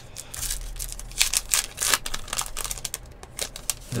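Baseball card pack wrapper being torn open and crinkled by hand, with sharp crackling rips mostly in the first two seconds, then quieter rustling as the cards are drawn out.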